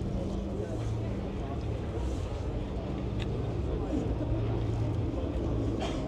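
Roller coaster lift hill drive hauling the train slowly up the vertical lift: a steady low mechanical hum that fades in and out, under the murmur of a crowd.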